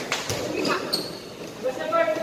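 A basketball bouncing on the court floor, with a couple of sharp bounces right at the start, under players' voices and calls.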